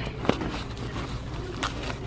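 Plastic bubble wrap rustling and crinkling as hands dig through a cardboard box, with a couple of sharper crackles.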